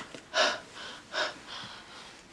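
A woman gasping for breath: two sharp breaths, one about half a second in and one just past a second, then a fainter one.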